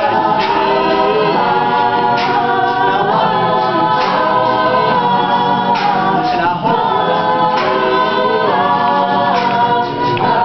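College a cappella group of mixed male and female voices singing a pop song without instruments, a male singer out front over the group's sustained backing chords that change every second or two.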